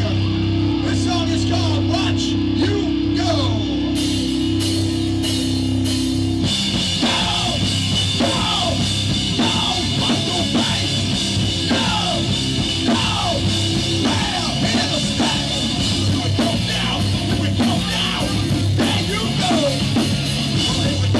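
Hardcore punk band playing live: a steady held guitar-and-bass chord, with cymbals coming in about four seconds in, then the full band with drums kicks in hard about six and a half seconds in.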